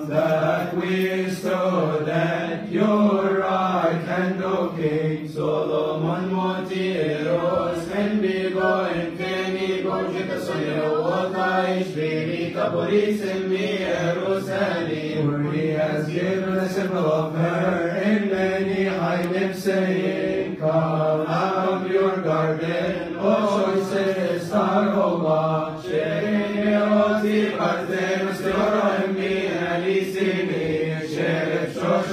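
Coptic Orthodox deacons chanting a vespers hymn in unison: male voices singing long drawn-out notes that bend slowly from pitch to pitch.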